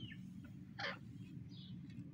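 A grey francolin giving one short, sharp call note just under a second in, followed by a fainter high note, over a steady low hum.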